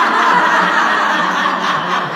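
A group of women and men laughing loudly together, many voices overlapping in one continuous wash of laughter. It is the deliberate group laughter of a laughter yoga session.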